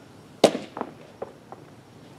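A baseball smacking into a catcher's mitt once, sharply, about half a second in, followed by a few lighter knocks.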